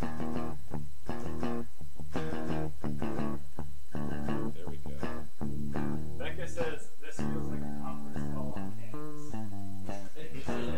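A guitar being played, a run of sustained notes and chords that change about every half second to a second, with brief breaks between them.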